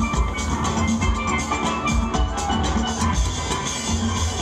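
Steel orchestra playing live: many steel pans ringing out a fast melody and chords over a steady low beat.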